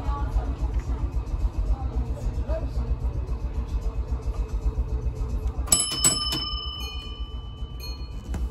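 W class tram running along street track with a steady low rumble. About six seconds in its bell gong is struck several times in quick succession, and the metallic ring hangs on for a couple of seconds.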